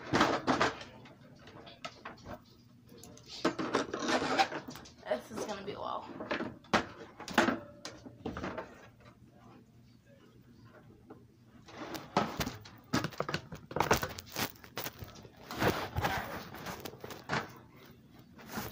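Plastic toy wrestling ring being handled and fitted together: irregular clicks, knocks and clatters of the plastic posts and ring, coming in clusters with quieter gaps between. Indistinct low muttering runs along with the handling.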